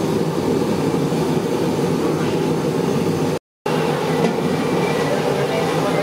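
Steady bubbling and sizzling of a large brass kadhai of gulab jamun cooking in foaming hot liquid, over a continuous low rumble. The sound cuts out for a moment about halfway through.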